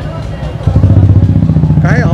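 Motorcycle engine running close by: a loud, low, steady engine note that comes in suddenly about two-thirds of a second in.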